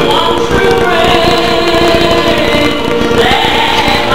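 Gospel church choir singing with a female soloist, in long held notes.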